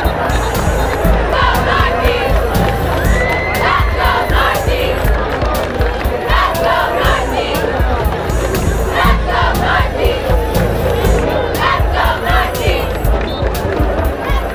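Football crowd in the stands cheering and shouting, with bursts of shouted chanting every two to three seconds.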